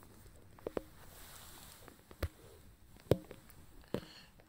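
A few short, sharp clicks and knocks at irregular intervals over a quiet background: handling sounds close to the microphone.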